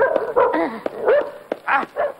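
A dog barking: several short barks spread over two seconds.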